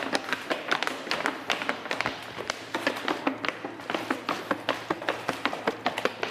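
Shoes tapping and scuffing on a tiled floor as people dance: rapid, irregular taps, several a second.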